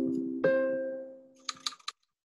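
A ringing ding, struck about half a second in and fading out over about a second, over the fading tail of an earlier one. A quick run of computer keyboard clicks comes near the end.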